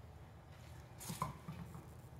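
A few faint clicks and rustles about halfway through, from gloved hands working a small metal oil-filter relief valve.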